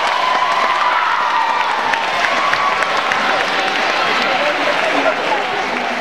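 Audience applauding, with some cheering voices in the crowd; the applause eases slightly near the end.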